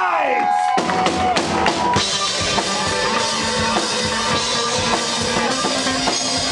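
Live band with drum kit playing loudly: a wavering, gliding note fades out, and just under a second in the full band comes in with a steady drum beat.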